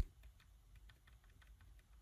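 A run of faint, irregular clicks from the front-panel control of an Axia xNode audio node as it is worked by hand to enter the subnet mask.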